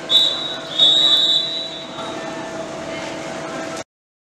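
Referee's whistle blown twice, a short blast then a longer one of under a second, over echoing pool-hall noise. The sound cuts off suddenly near the end.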